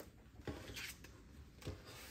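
Faint handling sounds on a desk: a few soft taps and a brief light rustle a little under a second in.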